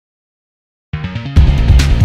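News bulletin intro theme music. Silence for about the first second, then a soft lead-in, with the full loud theme and its heavy bass coming in about a second and a half in.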